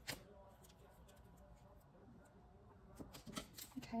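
Quiet desk handling of paper and stickers: a sharp click at the start, then a few small clicks and paper rustles about three seconds in, over faint background sound.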